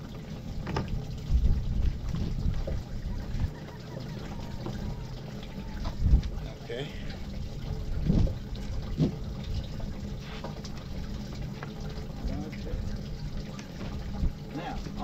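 Wind rumbling on the microphone and water lapping against a boat hull, with a few soft knocks as a cast net is handled.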